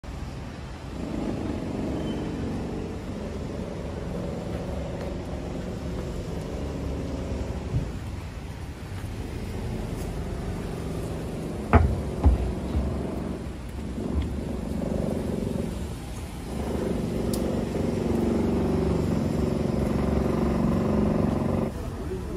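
Street noise with a motor vehicle's engine running steadily, fading out past the middle and coming back louder near the end. Two sharp knocks about half a second apart, the loudest sounds, come a little past the middle.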